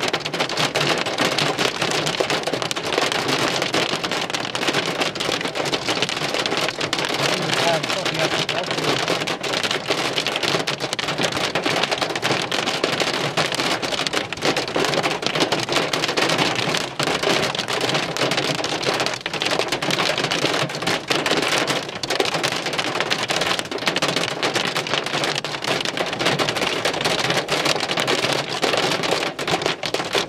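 Heavy rain and hail from a severe thunderstorm falling steadily: a dense, unbroken patter of countless small impacts.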